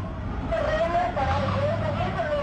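A raised voice shouting, high-pitched and wavering, starting about half a second in, over a steady low rumble.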